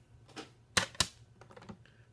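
Hard plastic graded-card slabs clacking as they are handled and swapped: two sharp clicks about a quarter second apart, with a few fainter taps around them.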